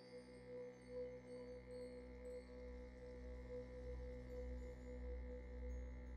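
Soft, slow ambient meditation music: sustained ringing tones held steady, with a low drone growing louder about two seconds in.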